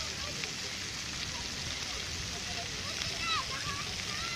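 Splash-pad water jets spraying steadily, a constant hiss of falling water, with children's voices in the background and a short high call about three seconds in.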